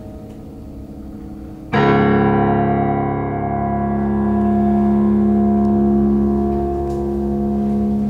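Grand piano: soft notes fading, then a loud low chord struck about two seconds in and left ringing, the song's closing chord.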